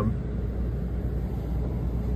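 Steady low rumble of an NJ Transit commuter train running, heard from inside the passenger car.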